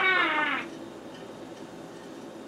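A woman's long, drawn-out wailing cry, sliding down in pitch and dying away about half a second in, followed by quiet room tone.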